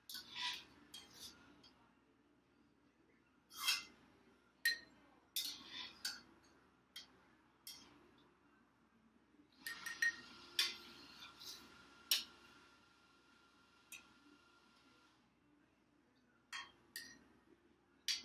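A metal ladle knocks and clinks against a stainless steel stockpot as tea bags are fished out of the brewed tea. The clinks come one at a time, scattered irregularly. About ten seconds in there is a few seconds of hiss with a faint steady tone.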